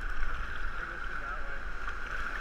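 Steady rush of river rapids around an inflatable kayak, with wind rumbling on the camera microphone.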